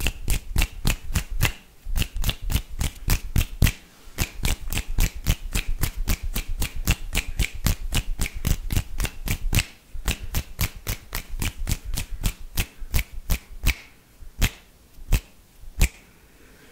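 Fast ASMR clicking made with fingers and mouth right up against a condenser microphone. It comes as a sharp, even run of about four to five clicks a second with a few short pauses, over a low rumble for the first two thirds.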